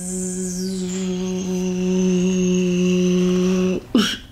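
A woman's voice holding one long, steady hummed note that stops abruptly near the end, a vocal imitation of an elevator.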